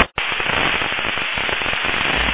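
FM static from a PMR446 handheld radio receiver: a sharp click and a brief dropout near the start, then a steady crackling hiss with no voice on the channel.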